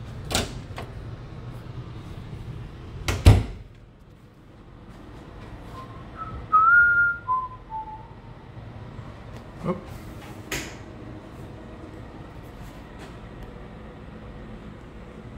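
An interior door being handled: a latch click, then a sharp knock with a low thump about three seconds in. A few seconds later comes a brief squeak of a few notes that step downward, and two lighter clicks follow.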